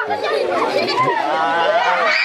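Several people's voices talking over one another, a loud mix of overlapping chatter with no single clear speaker.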